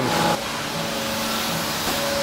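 Steady hiss and hum of workshop machinery running, with no distinct strokes or impacts. The sound drops a little and changes about a third of a second in.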